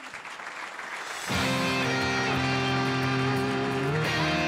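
Audience applause, followed about a second and a half in by music that cuts in suddenly and much louder, with a sustained held chord.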